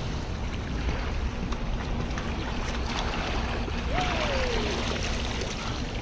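Shallow sea water lapping and splashing around a child's legs and hands as she scoops at the water, with wind rumbling on the microphone. A short falling cry sounds about four seconds in.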